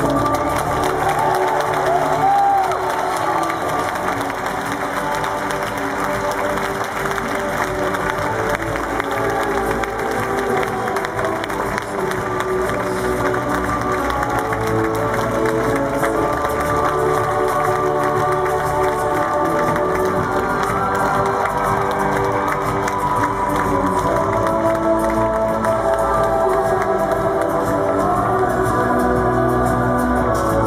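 Stadium music with long held notes over a large crowd cheering and applauding.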